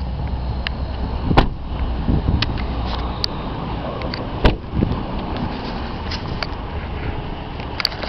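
A car door thuds shut about a second and a half in, and a second knock comes about four and a half seconds in, over the steady low hum of the Ford Edge's engine idling.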